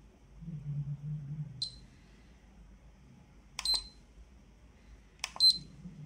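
Ecotest TERRA dosimeter giving three short high-pitched beeps, the last two each right after a sharp click of its buttons being pressed while it is switched from dose-rate to beta-flux mode.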